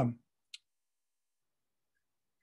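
A man's voice trailing off on a hesitant 'um', then a single short click about half a second in, then near silence.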